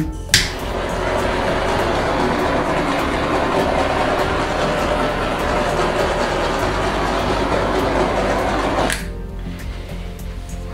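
Steady rush of air from a handheld blower played over wet pour paint to burst its air bubbles. It switches on just after the start and cuts off about a second before the end.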